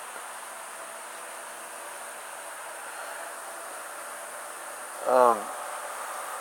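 Insects trilling steadily and high in the background. About five seconds in, a person makes one short, loud vocal sound that falls in pitch.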